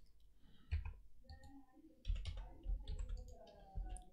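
A few faint, scattered clicks of a computer mouse and keyboard.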